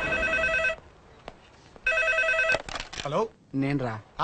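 Corded office telephone ringing with a rapid electronic trill, in two rings about a second apart.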